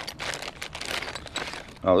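Small clear plastic bags of mounting hardware crinkling as they are handled and pulled apart, a dense run of crackles that stops near the end.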